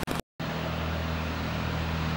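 Steady low hum over a background hiss, broken near the start by a few sharp clicks and a brief total dropout in the sound.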